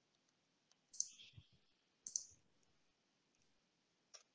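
Two short bursts of computer mouse clicks about a second apart, otherwise near silence.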